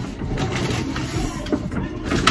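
Paper grocery bag rustling irregularly, with small knocks, as a hand rummages inside it and lifts out a drink can.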